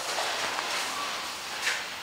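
Footsteps and handling noise from a handheld camera being carried across a shop floor, over a low room hiss, with one brief scuff about one and a half seconds in.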